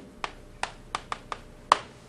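Chalk tapping and clicking on a chalkboard while writing: about seven short, sharp, irregular taps as the strokes are put down.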